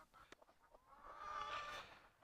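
A laying hen in a nest box gives one faint, drawn-out call about a second in.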